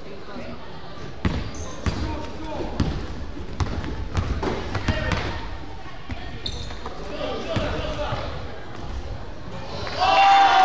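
Basketball bouncing on a hardwood gym floor in a series of irregular thuds, over players' and spectators' voices.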